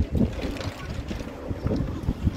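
Wind buffeting the microphone in uneven low gusts.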